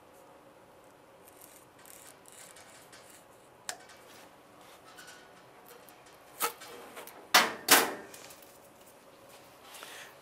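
Faint scraping and rustling of a small blade trimming sticky-back mounting tape on a flexographic plate cylinder. This is followed by a few sharp clicks and clacks of hard objects: one near the middle, then three louder ones close together later on, the last two about a third of a second apart.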